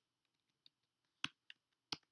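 A few separate, sharp keystroke clicks on a computer keyboard as a spreadsheet formula is typed in, the two loudest in the second half.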